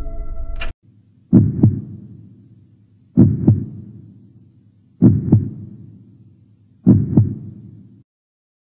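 Heartbeat sound effect: four slow, deep double thumps, lub-dub, spaced about two seconds apart, each fading away. Just before the first beat, a held ambient music chord cuts off with a brief swish.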